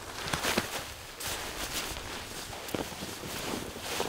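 Wind noise with soft rustling of clothing and a few faint crunches as someone moves in snow.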